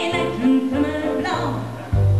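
A woman singing a pop song live into a microphone over band accompaniment, with a bass line moving under the melody.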